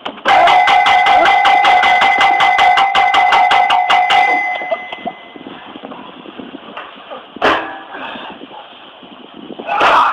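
A bell rung rapidly, about six strikes a second over a steady ringing tone, for about four seconds before dying away; a single sharp hit follows about seven and a half seconds in.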